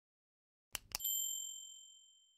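Subscribe-button sound effect: two quick mouse clicks about three-quarters of a second in, then a high, bright bell ding that rings out and fades away.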